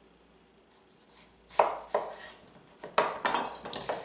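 Chef's knife cutting a yellow summer squash lengthwise in half on a wooden cutting board: three sharp knocks of wood and blade, the first about a second and a half in, after a quiet start.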